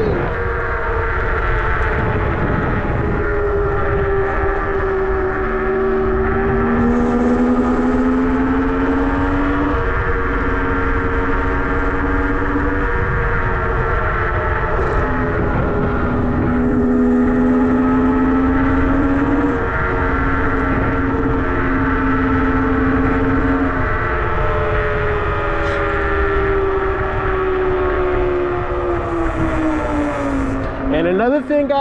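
Nanrobot LS7+ electric scooter's hub motors whining under way, the whine rising and falling in pitch with speed and dropping near the end as the scooter slows, over a steady rush of wind on the microphone.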